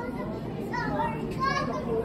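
Children's high-pitched voices calling out briefly a couple of times over a steady low background hum.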